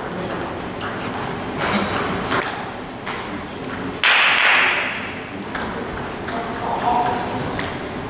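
Table tennis rally: the ball clicking sharply off the paddles and the table in a back-and-forth run of hits. A louder burst of noise breaks in about four seconds in.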